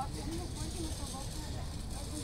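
Faint, indistinct voices of other people at a distance, over a low steady rumble.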